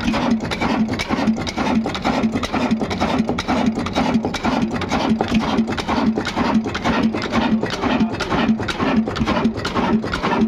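Old Ruston Hornsby stationary diesel engine running steadily, its combustion knock and valve-gear clatter beating about three times a second.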